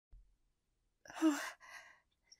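A woman's breathy, sighing "Oh" after about a second of silence, followed by a short, fainter breath: a sigh of relief at finding someone.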